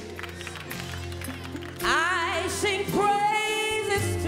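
Gospel worship song with electronic keyboard accompaniment and a woman singing. The keyboard holds chords quietly at first; about two seconds in, the voice comes in louder with a run sweeping up and down in pitch, then holds a note.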